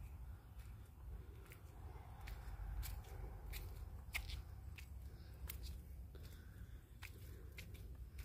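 Faint footsteps on old gritty concrete steps, each a short crisp crunch, coming irregularly about once a second over a low steady rumble.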